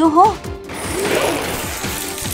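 Cartoon sound effect of a crane's winch ratcheting as it reels in a rope, a fast clicking that starts about half a second in.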